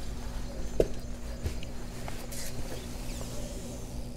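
Begode EX30 electric unicycle's hub motor making a steady low grinding hum while the wheel stands upright and is not being ridden. The noise comes with the newly installed firmware and is commonly reported with it.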